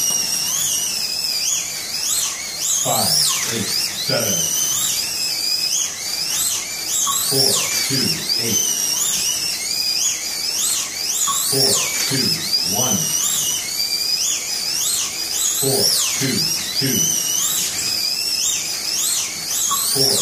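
Several slot cars' small electric motors whining in a race, the pitch rising and falling as the cars accelerate down the straights and brake into the turns. About every four seconds a bunch of cars passes close by, with a lower, falling whine.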